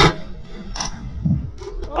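A few short, sharp pops and knocks, the loudest at the start: an airsoft grenade shell firing a chalk round at close range and the round hitting its target. A man shouts 'Oh!' at the very end.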